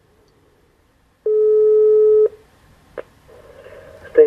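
Telephone ringback tone heard down a phone line: one steady tone lasting about a second, then a sharp click near the end as the call is picked up.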